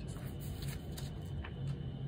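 Steady low background rumble and hum with a few faint, light clicks.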